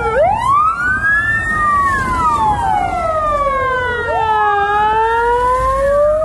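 Emergency sirens of a fire engine and rescue vehicle wailing: two slowly rising-and-falling tones overlapping and crossing each other, over a low engine rumble.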